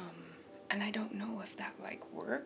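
A woman talking in a low, hushed voice close to the microphone, starting about two-thirds of a second in.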